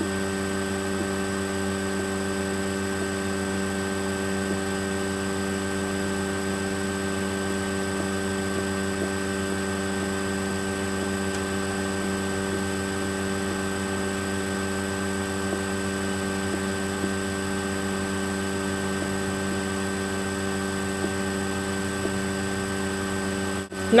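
Steady electrical mains hum, a constant buzz of several stacked tones at an unchanging level, briefly cutting out just before the end.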